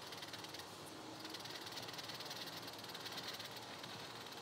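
A paper blending stump rubbing graphite into drawing paper in faint, quick strokes, working the graphite down into the paper's tooth.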